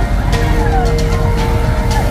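Fairground ride running: a steady low motor rumble with music and voices over it.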